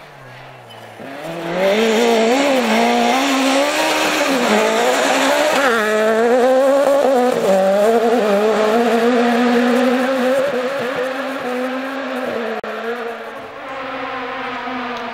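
Rally car engine revving hard at close range, its pitch rising and dropping with throttle lifts and gear changes. It comes in loud about a second and a half in and eases off after about ten seconds.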